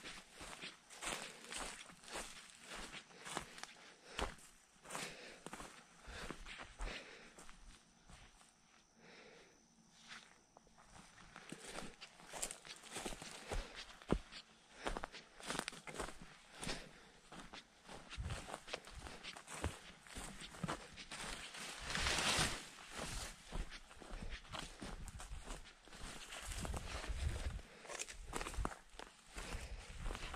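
Footsteps walking over the forest floor, an irregular run of steps with a louder rustle about two-thirds of the way through.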